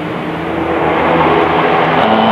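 A motor vehicle passing close by: a rush of engine and road noise that builds through the first second and stays up.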